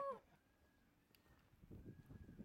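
The tail of a man's high "woo" whoop in the first moment, then near silence, with faint low noise near the end.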